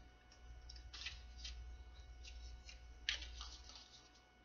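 Tarot cards being gathered up by hand: faint slides and light taps of card stock, a few separate strokes, the sharpest a little after three seconds in.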